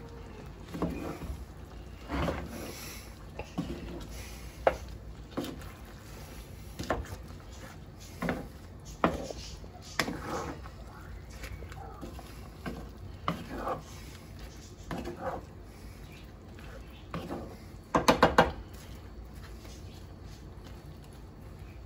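Wooden spoon stirring shrimp and onions in a thick cream sauce in a cast-iron skillet: short, scattered scrapes and knocks about every second, then a quick run of four louder knocks near the end.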